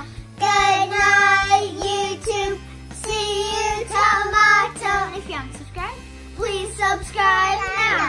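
Young children singing a short sign-off chant together: three sung phrases with long held notes and short breaks between them.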